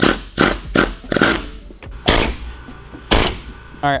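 Pneumatic air hammer with a chisel bit fired in about six short bursts, driving under the edge of a car's steel roof skin to pop it loose from the body along its drilled-out spot welds.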